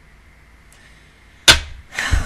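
Faint room hiss, then a sudden loud smack about one and a half seconds in, dying away quickly, with a low thump just after.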